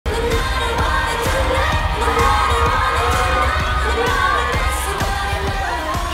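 K-pop song: singing over a steady bass beat.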